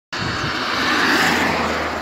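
Road traffic: a vehicle passing, a loud rushing noise that swells to its loudest a little after a second in and then eases slightly.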